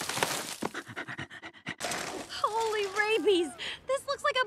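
Cartoon werewolf panting hard like a dog in quick, rapid breaths, followed about halfway through by a drawn-out vocal sound that slides down and up in pitch.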